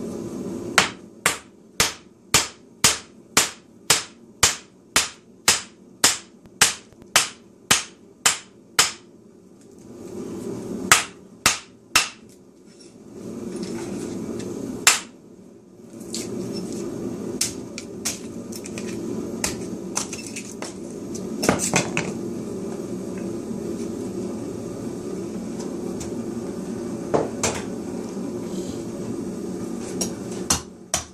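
Wooden mallet striking the back of a hatchet to drive it down through a short firewood log, splitting slabs off its sides. Sharp, evenly spaced strikes come about two a second for the first nine seconds, then a few scattered, irregular blows follow. A steady low hum sits underneath.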